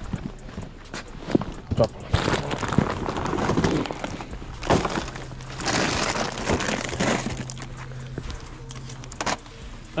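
Plastic grocery bags rustling and being set down on brick pavers, with scattered sharp clicks and knocks of items touching the ground, and shuffling footsteps.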